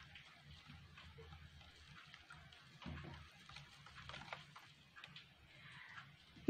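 Near silence, with faint scattered light ticks and a brief slightly louder rustle about three seconds in: a spoon stirring sugar into water in a plastic cup.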